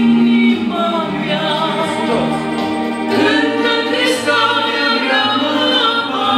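A man and a woman singing a Romanian Christian song together, holding long notes.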